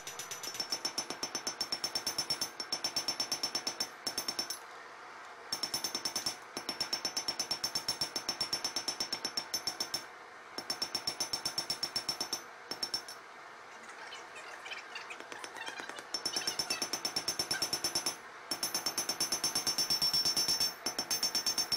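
Hand hammer striking red-hot spring steel on an anvil: rapid, evenly spaced blows with a high-pitched anvil ring. The strikes come in runs broken by short pauses, the longest lasting a couple of seconds a little past the middle.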